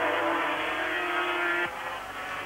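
500cc two-stroke Grand Prix racing motorcycles running at high revs with a steady engine note that drops away suddenly near the end.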